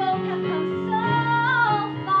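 A woman singing a musical-theatre song over instrumental accompaniment, holding a long note from about a second in that bends up and then falls near the end.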